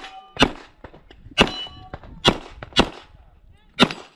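Handgun shots fired at steel targets: five shots spaced about half a second to a second apart, with steel plates ringing briefly after hits, at the start and again about a second and a half in.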